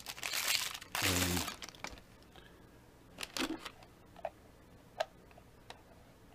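Clear plastic bag crinkling loudly as a small antenna is pulled out of it, for about the first second and a half. Then a few faint, separate clicks as the antenna is handled and fitted to the top of a handheld frequency counter.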